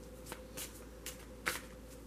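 Faint, scattered rustles and clicks of tarot cards being handled, a few soft strokes with the loudest about one and a half seconds in.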